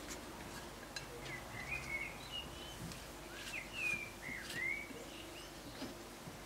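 A bird chirping: a run of short, sliding chirps from about a second in until near the end, over faint soft rustles and clicks of filo pastry sheets being pressed into a dish and a low steady hum.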